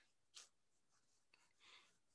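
Near silence: room tone, with one faint tick about half a second in.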